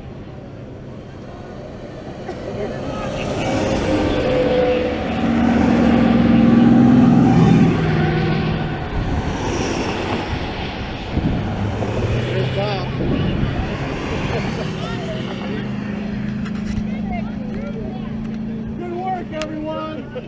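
Motorcade vehicles passing on the highway, the sound swelling to its loudest about six to eight seconds in and then easing off, with a crowd's voices mixed in.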